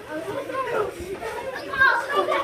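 Chatter of many children talking and calling out at once, their voices overlapping.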